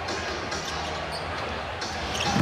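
Basketball dribbled on a hardwood court, a few sharp bounces over the steady noise of an arena crowd.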